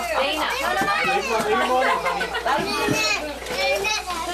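Several young children's voices talking at once, overlapping chatter.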